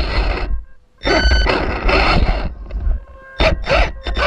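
Small-scale RC rock crawler's electric motor and geared drivetrain whirring in three short bursts as the throttle is blipped. A thin steady whine carries through the pauses.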